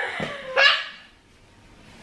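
A dog giving two short barking yelps about half a second apart, the first falling in pitch.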